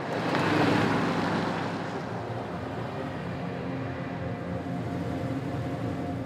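A car driving up on a wet road, its engine and tyre noise swelling within the first second and then easing off, over a steady sustained music drone.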